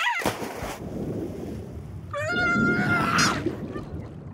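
Cartoon sound effects: a sudden loud hit at the very start with a quick falling cry, then a low rumble under a long, wavering squawk from a cartoon bird character, lasting about a second, a couple of seconds in.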